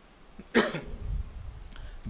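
A man coughs once about half a second in, picked up close on a lectern microphone, followed by a low rumble on the microphone.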